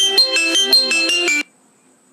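A short electronic melody, a quick run of about nine bright notes lasting about a second and a half, that cuts off suddenly.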